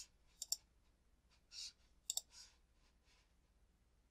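Faint computer mouse clicks: a single click about half a second in and a quick pair of clicks about two seconds in, with soft brief rustles between them.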